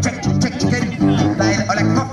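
Live street music: a strummed guitar and a sousaphone playing a bouncy bass line, with a man singing over it.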